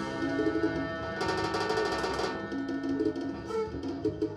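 Electric guitar driving a Roland GR-55 guitar synthesizer: layered, sustained synth tones with drum-like percussive hits, growing brighter and busier for about a second near the middle.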